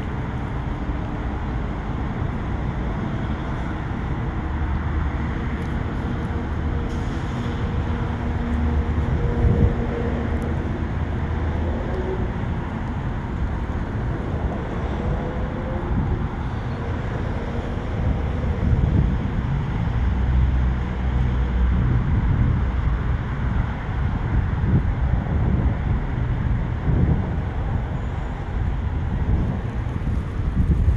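Steady vehicle and road-traffic noise with a low rumble that swells and eases, and no single distinct event standing out.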